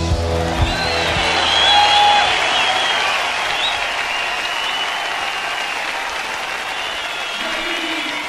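Concert hall audience applauding and whistling at the end of a song, as the band's last chord rings out in the first moment. The applause slowly dies down.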